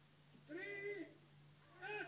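A short, high-pitched voiced call lasting about half a second, about half a second in, with a second one starting near the end, over a faint steady low hum.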